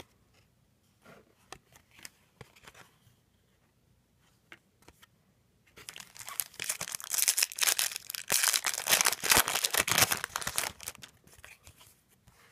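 A foil trading card pack wrapper being torn open and crinkled, loud and crackly for about five seconds starting some six seconds in. Before that, only faint occasional clicks of cards being handled.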